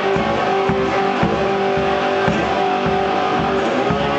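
Homemade wine box guitar played blues-style, instrumental, with a long held note through the middle and a steady low beat about twice a second.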